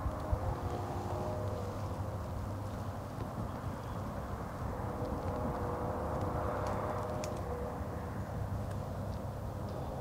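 Distant road traffic: a steady low rumble with a faint tyre hum that swells and fades in the middle, as if a vehicle passes on a far-off highway. A few faint clicks sound near the middle.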